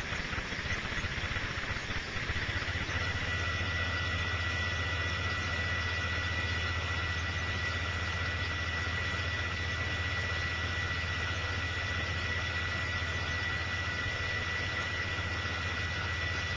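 A steady low hum with a thin, steady high-pitched whine over it, both settling in a couple of seconds in. There are no distinct handling clicks or knocks.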